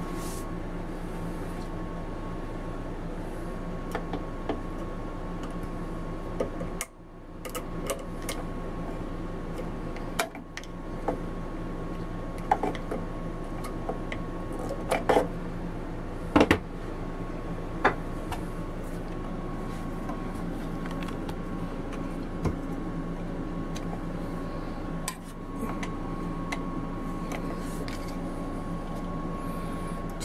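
Scattered light clicks and taps of a plastic cooling fan and its metal retaining clip being worked onto an electric motor shaft by hand, the sharpest taps coming midway, over a steady background hum.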